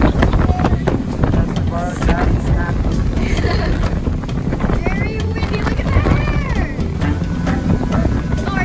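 A toddler whimpering and crying in broken, wavering cries, over the steady low rumble of a boat's motor and wind on the microphone.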